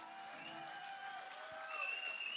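Faint held instrument notes ringing out at the end of a live rock band's song, over light audience applause.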